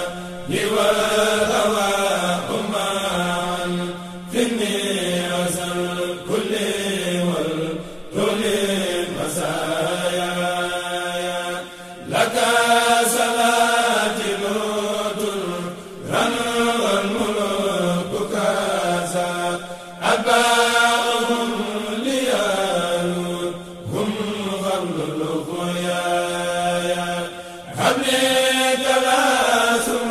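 Men's voices chanting an Islamic devotional chant together, in repeated phrases that restart about every four seconds.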